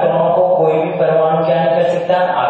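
A man's voice, continuous and chant-like, drawn out with only brief breaks.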